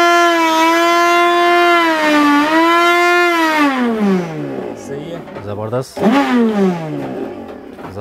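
Silver Crest blender motor running with an empty jar, a loud steady high-pitched whine. About three and a half seconds in, the speed knob is turned down and the pitch drops as the motor slows. The pitch rises briefly again around six seconds, then falls away once more as it winds down.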